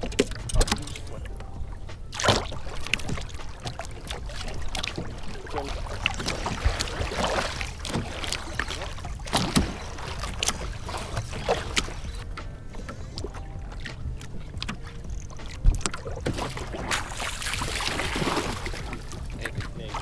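Choppy water slapping and sloshing against the hull of a small fishing boat, with irregular knocks and clatter on board over a steady low rumble.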